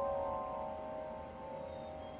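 Recorded piano music: a held piano chord rings on and slowly dies away, with no new note struck, played back over the room's speakers.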